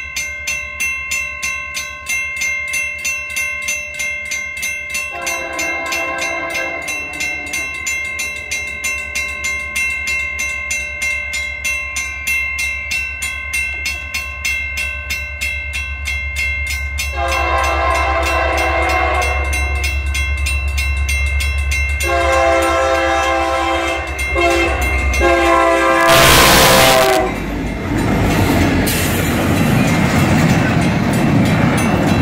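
Grade-crossing bell dinging about twice a second while an approaching locomotive sounds its horn in the crossing pattern: long, long, short, long. Under it the engine's rumble builds, and near the end the locomotive reaches the crossing with a loud rush and the rolling clatter of the train follows.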